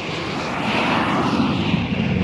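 A rushing whoosh sound effect for the closing logo: an even noise without a tune, swelling from about half a second in and easing again near the end.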